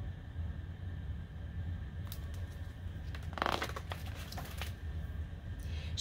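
Pages of a hardcover picture book being turned: a brief paper flick about two seconds in, then a longer rustle of the page going over about three and a half seconds in, over a steady low hum.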